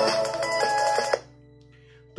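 Electronic music playing through a small pill-style Bluetooth speaker, cutting off suddenly about a second in and leaving only a faint hum.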